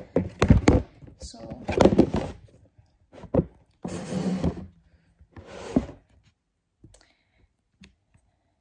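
Close handling noise from wiping a wooden crib with a towel: cloth rubbing and a few knocks against the crib near the microphone, with bits of a woman's voice in between. It falls away over the last couple of seconds.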